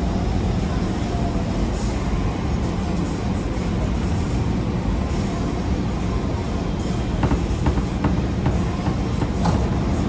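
AnsaldoBreda P2550 light-rail car heard from the driver's cab as it pulls away from a station platform: a steady low rumble of wheels on rail and traction motors, with a few sharp clicks from the track in the second half.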